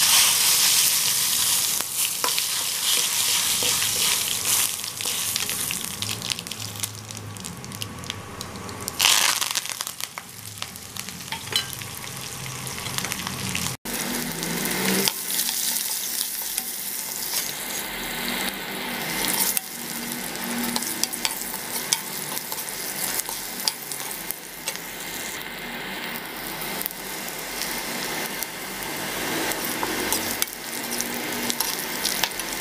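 Oil sizzling and crackling in a kadai as onions, green chillies and curry leaves fry, with a spoon stirring through them. The sound breaks off sharply about halfway through, then the sizzling carries on.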